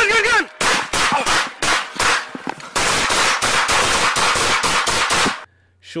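A man shouts briefly, then police officers' guns fire a rapid volley of about twenty shots, irregular at first and then about four a second, picked up by a police body camera's microphone.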